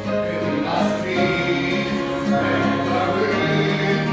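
A man singing a gospel song into a handheld microphone, with continuous musical accompaniment behind his voice.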